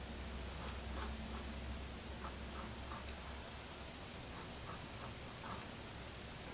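Mechanical pencil scratching across paper in many short, irregular sketching strokes.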